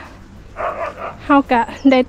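Mostly speech: a woman's voice saying a few words in Thai, after a short patch of hiss-like noise.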